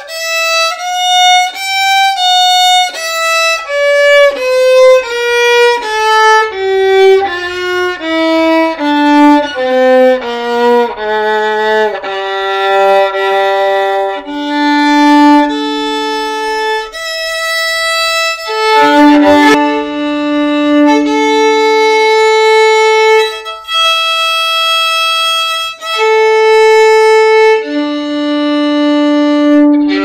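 Violin played with a bow: a scale of short notes climbing and then stepping back down, followed by long held notes on the open strings, sometimes two strings sounding together. A brief knock about two-thirds of the way through.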